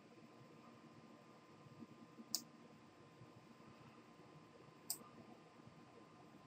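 Two computer mouse clicks, about two and a half seconds apart, over the near silence of a quiet room.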